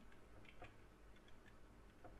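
Near silence with a few faint computer keyboard key clicks as an email address is typed.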